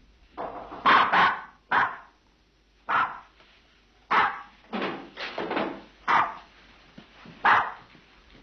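A dog barking repeatedly: about eight short, sharp barks at uneven intervals.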